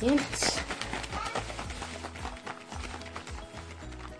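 Small plastic bottle holding instant coffee and water, shaken by hand in a quick, steady rhythm of knocks to whip the coffee into a thick foam. Background music plays underneath.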